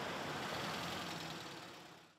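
Road traffic: cars and motorbikes passing slowly, a steady wash of engine and tyre noise that fades out near the end.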